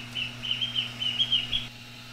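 Chicks peeping: a quick run of short, high peeps, about five a second, that stops near the end.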